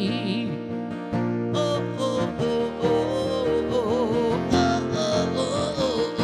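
A man singing live to his own strummed acoustic guitar, holding some notes with vibrato over steady strumming.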